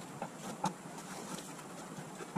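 Footsteps on a concrete floor: two light steps about half a second apart, over faint steady background noise.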